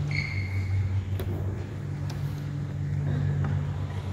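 A steady low hum, with a brief high-pitched tone just after the start and two sharp clicks about one and two seconds in.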